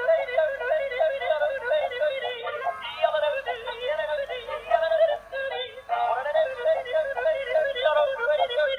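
Dancing cactus toy playing a song through its small built-in speaker: a thin, high-pitched sung melody with music, with brief breaks about three and six seconds in.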